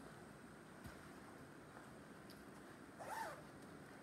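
Near silence: room tone, with one brief faint pitched sound, a short squeak or vocal sound, about three seconds in.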